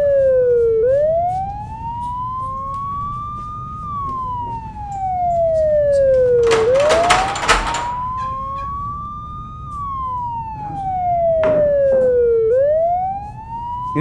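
Emergency-vehicle siren wailing, its pitch rising slowly and falling back about every six seconds. A brief rattling clatter sounds about seven seconds in.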